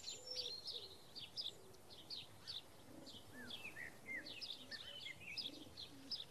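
Birds chirping, faint and outdoors: a steady scatter of short, high chirps and a few falling whistled notes.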